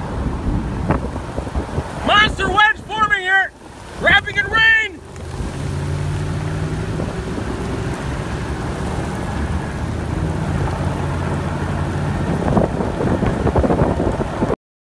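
Strong storm wind rushing over the microphone, steady from about five seconds in, with a low steady hum underneath. A few seconds of excited, high-pitched shouting come early on.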